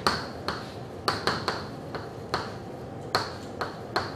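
Chalk striking a blackboard as words are written: a series of sharp, irregularly spaced clicks, a few a second, each with a brief ring.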